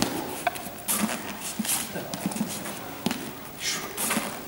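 Footsteps and shoe scuffs on a sports-hall floor as someone steps through a knife-and-shield drill: irregular dull thuds and knocks with a few brief swishes.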